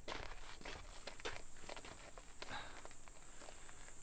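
Faint, irregular footsteps of a few people on a dirt courtyard: soft scuffs and taps, several a second, with no steady rhythm.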